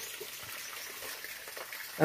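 Faint, steady background hiss of the outdoors, with no distinct events.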